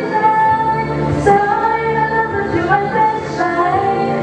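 Girls singing a song into microphones over an instrumental backing track, holding long notes, with a bass line coming in about half a second in.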